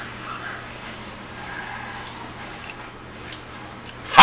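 Room noise with a steady low hum and a few faint clicks.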